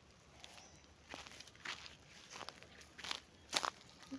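Footsteps through undergrowth, about five uneven steps, faint.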